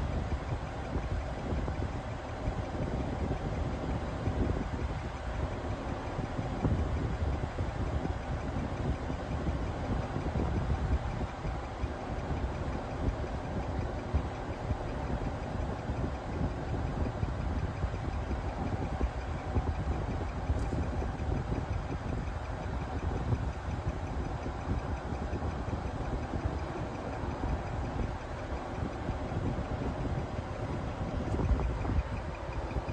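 A vehicle engine idling steadily, heard from inside a stopped car's cabin, mostly a low, even hum.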